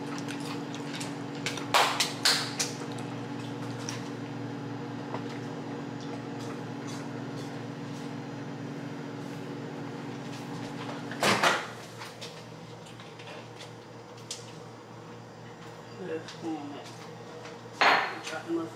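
A kitchen appliance running with a steady low hum, heating fries to melt the cheese on them, stops with a loud clunk about eleven seconds in. A few sharp clicks and knocks come near the start.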